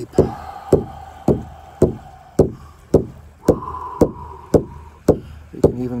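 Hide frame drum (a Northwest Coast hand drum) struck with a padded beater in one steady beat, about two strikes a second.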